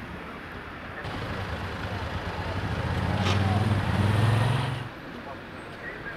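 A motor vehicle's engine running, growing louder and stepping up in pitch as it accelerates, then cutting off suddenly near the end. A single sharp click is heard about three seconds in.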